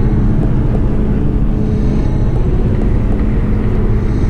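Road noise inside a car cruising on a highway: a loud, steady low drone of tyres and engine.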